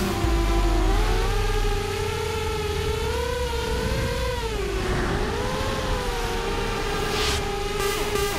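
Walkera F210 racing quadcopter's motors and propellers whining in flight, recorded from the drone itself. The pitch swells and sags with the throttle, dropping steeply about five seconds in before climbing again, and there is a brief rush of hiss near the end.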